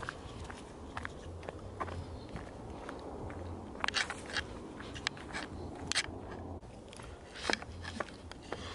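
Footsteps crunching and scuffing over dry fallen leaves on a paved path, in irregular steps.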